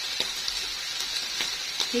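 Chicken livers sizzling steadily in a frying pan, with a few faint clicks.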